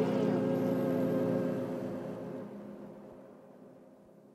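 The song's final held chord fading out steadily to near silence.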